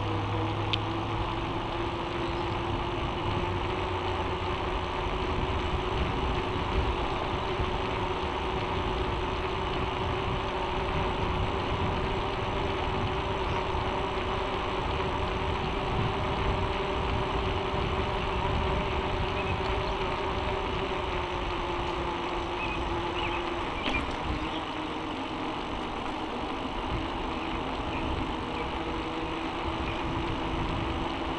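Mountain bike rolling steadily on asphalt: a constant tyre hum and rushing wind on the camera's microphone, easing off slightly about three-quarters of the way through.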